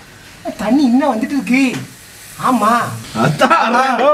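A voice making wordless sounds with a wavering pitch, in two stretches, over a faint crackling hiss of bath foam.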